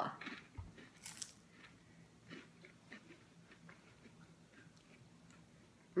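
A bite into a saltine cracker spread with almond butter about a second in, then faint crunchy chewing of the cracker that tails off over the next few seconds.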